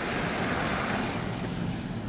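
A car driving, heard from inside the cabin: a steady rush of road and wind noise.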